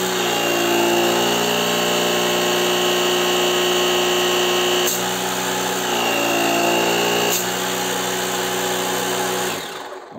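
Parkside PKA 20-LI A1 cordless compressor and air pump running with a steady, full-sounding motor hum. Its pitch shifts briefly twice, and it cuts off just before the end.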